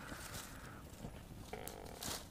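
Faint crackling of a wood campfire, with a few short pops.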